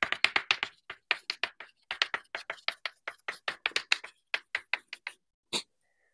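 Chalk tapping and scratching on a blackboard during writing, played fast-forward: a rapid, irregular run of sharp taps that stops near the end.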